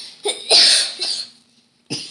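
A person coughing: one harsh burst starting about half a second in and lasting about half a second.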